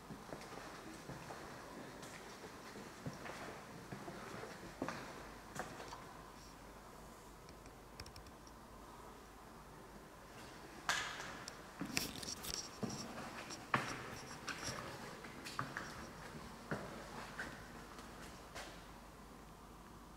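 Slow, quiet footsteps and faint scuffs on a hard corridor floor, a little louder and more regular in the second half.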